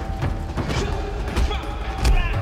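Action-film fight-scene soundtrack: music with a deep bass under a string of sudden clicks and hits.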